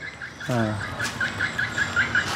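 A small bird calling a rapid, even series of short, high chirps, about five a second.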